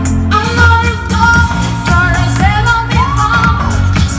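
A girl singing a pop song into a microphone over a backing track, holding long sustained notes without words.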